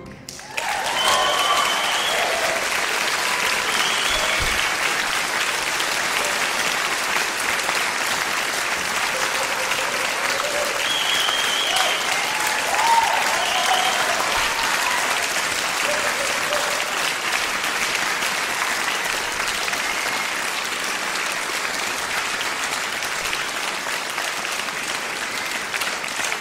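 Concert hall audience applauding steadily, starting about half a second in right after the orchestra's final chord, with a few brief whistles and cheers over the clapping.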